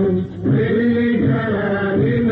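Old Kuwaiti song recording, with singing that sounds muffled for lack of treble. There is a short break between phrases about a quarter second in.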